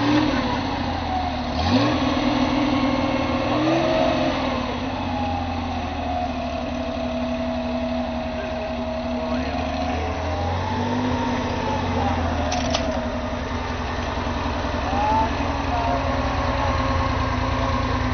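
Air-cooled flat-six of a Porsche 911 Carrera rally car idling steadily, with a few short blips of the throttle.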